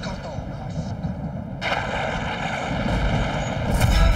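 A steady, rumbling dramatic sound effect for a mystic weapon being charged. It swells about one and a half seconds in and surges louder near the end.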